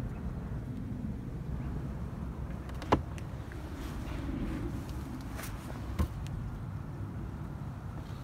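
Steady low outdoor rumble with two short sharp clicks, about three seconds and six seconds in.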